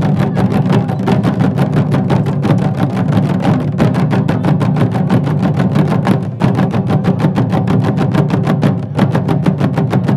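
A group of Nepali folk drums beaten together in a fast, even rhythm: Hudka Deuda drumming, loud and steady throughout.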